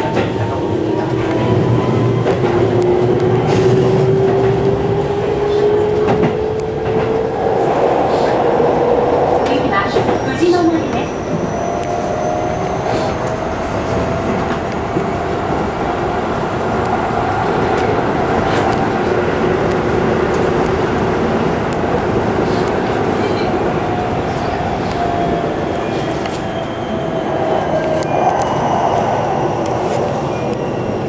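Keihan electric train running, heard from inside behind the front window: a steady rumble of wheels on rail with scattered clicks from rail joints. A motor whine rises in pitch over the first eight seconds as the train picks up speed, then holds and slowly sinks.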